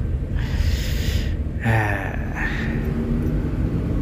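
Steady low rumble of a moving sleeper bus heard from inside its passenger cabin. About half a second in comes a short breathy rush of noise, and near two seconds a brief falling breathy sound.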